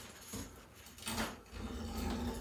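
Faint rustling and swishing of loose window screen mesh as it is pulled out of its frame, with one short swish about a second in.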